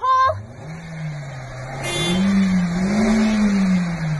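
Small hatchback's engine revving up and down, climbing twice to its highest pitch about three seconds in, as its driven wheels spin in snow: the car is stuck on a snowbank.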